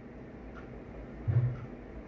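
A pause between phrases of a man's speech, with low steady background hum. A little past the middle there is one short, low voiced murmur from the same man.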